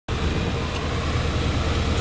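Heavy truck's diesel engine running, a steady low rumble with a fast even throb, heard from inside the cab.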